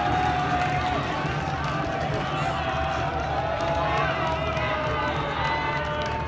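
Spectators in a baseball stadium cheering and shouting for a home run, many voices overlapping in long drawn-out calls.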